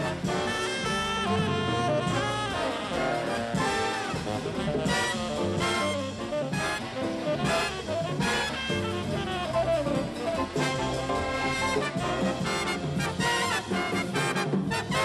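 Jazz big band playing a samba: saxophones and brass over drum kit, bass and piano.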